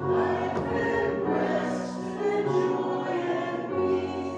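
Slow choral singing with sustained notes, the voices holding long chords that change every second or two.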